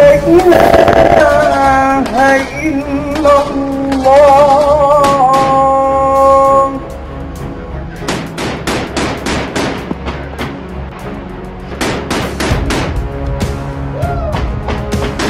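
Music with a held, wavering melody for the first half or so. From about seven seconds in, a rapid run of gunshots, several a second, sounds under the music.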